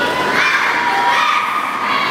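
Many children's voices shouting and cheering together, with long, held, high-pitched shouts over the noise of a crowd.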